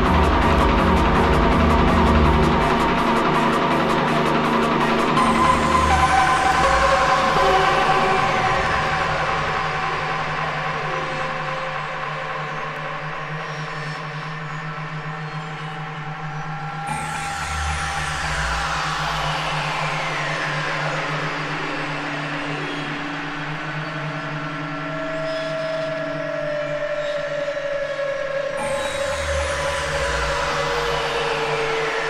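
Acid techno from a vinyl DJ mix. A kick-drum beat drops out about five seconds in for a breakdown of repeated falling synth sweeps over a held low drone. The beat comes back briefly in the middle and again near the end.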